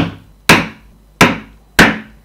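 Mallet striking a multi-prong leather stitching chisel, driving it through the leather into the cutting board to punch a row of stitching holes: three sharp knocks about two-thirds of a second apart.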